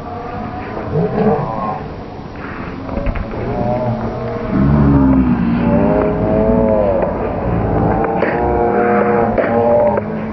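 Men shouting and yelling in long, drawn-out cries, louder from about halfway through.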